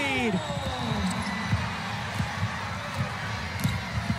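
A basketball dribbled on the hardwood court, irregular low thumps over the steady arena crowd noise, with a voice trailing off about a second in.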